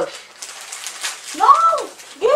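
Plastic snack wrappers crinkling and rustling as they are handled, with small crackles, then a person's voice gives one short call that rises and falls in pitch about a second and a half in, louder than the rustling.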